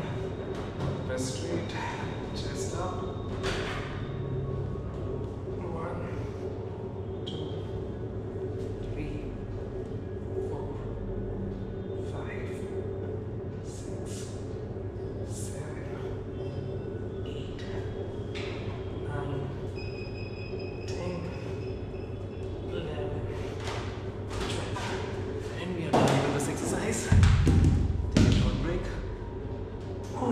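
Heavy dumbbells dropped onto a gym floor at the end of a set of decline dumbbell presses, landing as loud thuds near the end. Before that, a steady room hum with scattered light knocks runs under the set.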